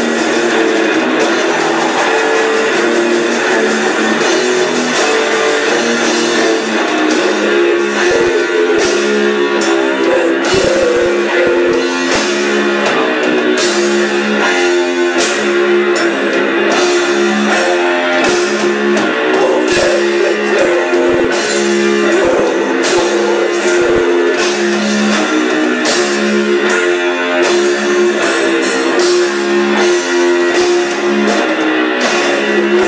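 Death metal band playing live, with distorted electric guitars and bass, loud and unbroken, and short hits recurring through the dense sound.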